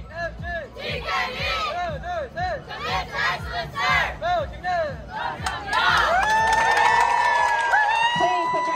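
Young taekwondo team shouting together: a quick run of many short, rising-and-falling shouts, then, about six seconds in, one long group yell that is held.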